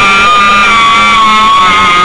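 A woman's very loud, high-pitched death scream, held as one long unbroken note at a nearly steady pitch.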